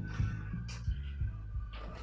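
Faint rustling of a polyester safety vest being handled and repositioned, a few short soft brushes, over a low steady hum.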